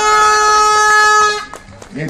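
Air horn giving one long, steady blast that cuts off about a second and a half in.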